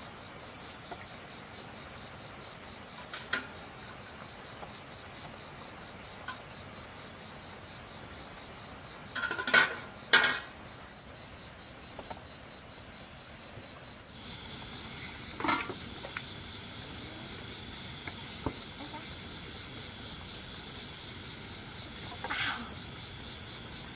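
Night crickets chirring steadily, with a second, higher insect trill joining about two-thirds of the way through. A few sharp knocks and clatters of kitchenware break in, two loud ones close together around the middle and one more a few seconds later.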